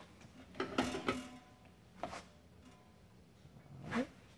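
A few light metal knocks and clicks as an espresso portafilter is handled and set down on a countertop scale, the last and loudest near the end.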